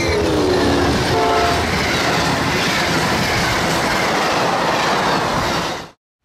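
A train horn sounds at the start, its chord sliding down in pitch, with a shorter, higher blast about a second in. Then comes the steady noise of a train rolling past on the rails, which cuts off sharply near the end.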